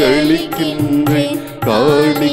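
Tamil devotional hymn sung in a Carnatic style. The voice holds long notes that waver and bend, with a brief drop in loudness shortly before the end.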